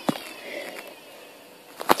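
Two knocks against a front-loading washing machine's steel drum: a light one at the start and a sharper, louder one near the end. In between, a faint high tone falls slowly in pitch.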